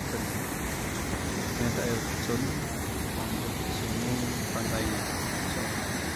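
Ocean surf breaking on a sandy beach, a steady rushing noise from waves the speaker calls fairly strong, with faint voices of people in the background.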